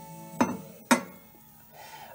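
Glass vase set down on a stone countertop: two sharp glassy knocks about half a second apart. Faint background music runs beneath.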